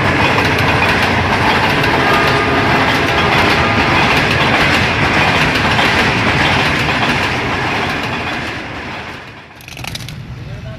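Passenger train coaches passing close by at speed: a loud steady rush of wheels clattering over the rail joints. It eases off near the end, then cuts abruptly to a quieter background.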